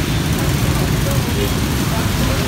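Steady low rumbling outdoor background noise, with no single event standing out.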